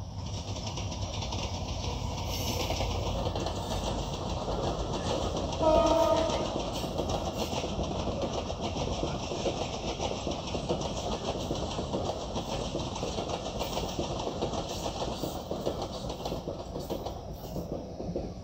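Sagardari Express, a Bangladesh Railway intercity passenger train, rolling past with a steady rumble of wheels on rails. About six seconds in, its horn gives one short blast, the loudest sound.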